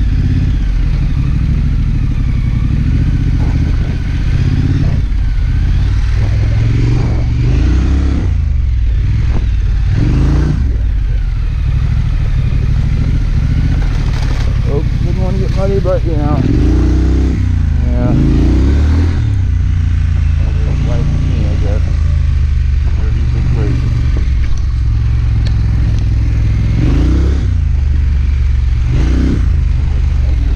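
2019 Triumph Scrambler's parallel-twin engine running under way on a dirt road, its pitch rising and falling several times with throttle and gear changes, over a heavy low rumble on the microphone.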